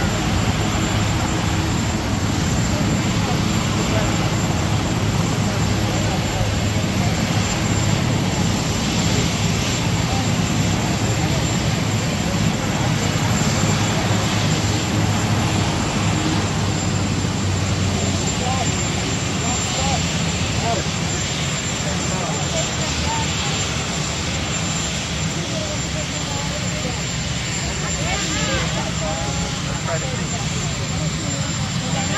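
A steady, loud rumble of engine noise, aircraft-like, with a low hum that drops away a little past halfway, and faint crowd voices underneath.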